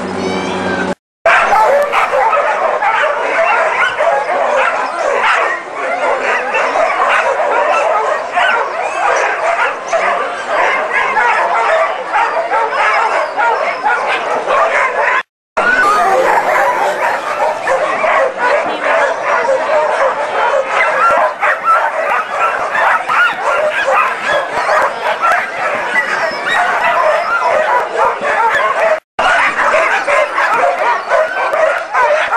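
A chorus of many harnessed sled dogs barking and yipping over one another without pause, the excited din of dog teams eager to run.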